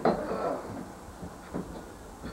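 A single knock right at the start, then low room noise with a fainter knock about one and a half seconds in.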